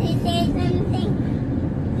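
Steady road and engine noise inside a moving car's cabin, with a young child's voice calling out briefly near the start.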